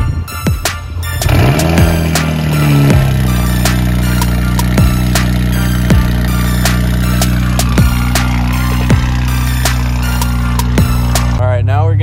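2011 BMW 335i's N55 turbocharged inline-six, with full bolt-on exhaust, starting about a second in. It flares up, then settles by about three seconds into a steady idle that stops abruptly near the end. Background music with a steady beat plays over it.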